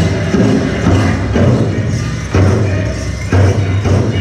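Powwow drum group singing a grass dance song: several men's voices in unison over a large powwow drum beaten with sticks in a steady beat.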